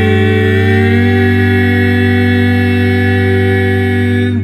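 Male a cappella trio of lead, tenor and bass voices holding one long chord in close harmony. The middle voices shift pitch slightly at the start, then the chord stays steady.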